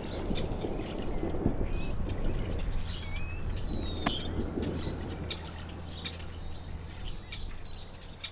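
Distant thunder, a low rolling rumble that slowly fades, with small birds chirping over it throughout.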